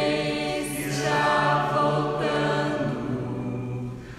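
Slow, unaccompanied-sounding singing in long held notes, with a new phrase starting about a second in and again about two seconds in.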